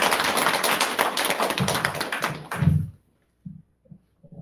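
Audience applause: a dense patter of hand claps that cuts off suddenly about three seconds in, with a low thump just before it stops.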